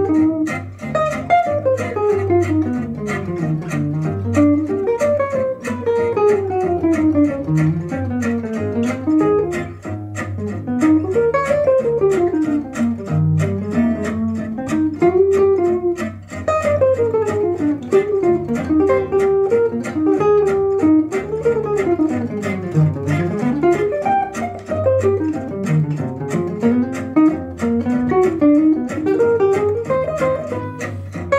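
Archtop jazz guitar playing fast single-note bebop lines that run up and down in quick even notes, over a backing track with a bass line stepping underneath.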